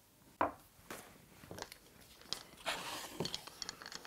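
A knock as a paint tin is set down on a wooden worktop, followed by scattered light clicks and soft handling sounds around a plastic roller tray.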